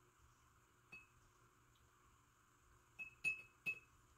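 Paintbrush knocking against a glass jar of water as it is rinsed: one light clink about a second in, then three quick clinks near the end, each ringing briefly.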